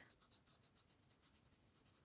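Near silence, with the faint scratching of a felt-tip marker stroking quickly back and forth on paper as it colours in a shape.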